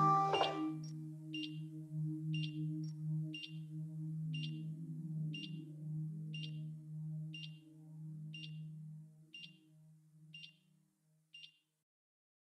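A heart-monitor beep about once a second over a low held drone. Both fade out, the drone first, and the last beeps stop shortly before the end.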